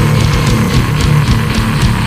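Death metal recording: heavily distorted electric guitars over fast, evenly repeating drum strokes.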